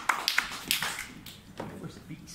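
Scattered hand claps from a small audience, thinning out and growing fainter as the applause dies away.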